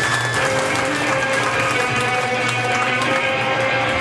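Electric guitars and bass of a hardcore punk band holding steady, ringing notes as the next song starts, with the crowd clapping underneath.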